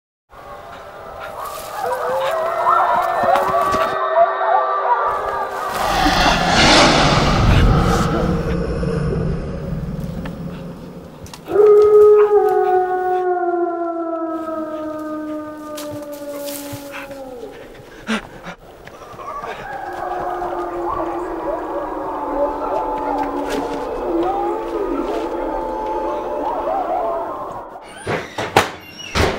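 Wolves howling: a wavering chorus of howls, then one long howl that slides slowly down in pitch from about twelve seconds in, then more wavering howls. A loud rushing noise passes through around six to eight seconds in.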